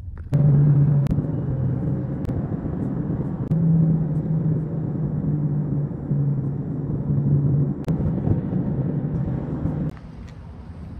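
A car on the move: steady road and engine rumble with a low hum.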